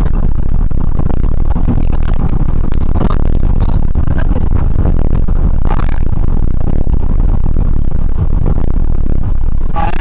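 Steady, loud wind rumble and road noise of a car moving at speed, filmed at an open window, with music playing underneath.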